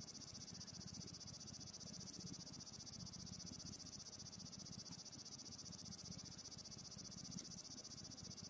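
Faint, steady high-pitched trilling of insects, with a faint rapid low flutter underneath, at near room-tone level.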